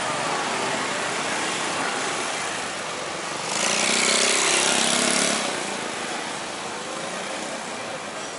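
Busy street traffic noise, with a motor scooter passing close by about three and a half seconds in: the loudest sound, lasting nearly two seconds before fading back into the traffic.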